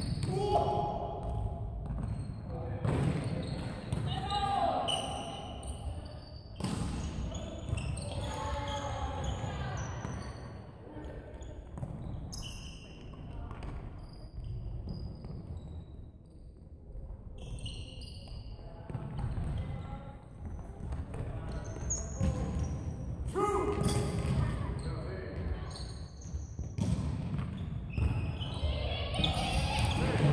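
Futsal ball being kicked and bouncing on a wooden sports-hall floor, repeated thuds throughout, mixed with players' voices calling out and short high squeaks, all echoing in the large hall.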